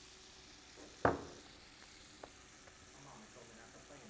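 Catfish fillets frying in a pan of hot oil, a faint steady sizzle. A short sharp sound comes about a second in, and a small click just after two seconds.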